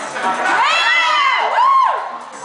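Audience cheering at a live show, with a high voice sliding up and falling away twice over the crowd noise.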